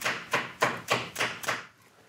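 Rubber mallet tapping a lock bolt washer down into its filed-out hole in a wooden rifle stock: a steady run of light, sharp taps, about three a second, that stops a little past halfway.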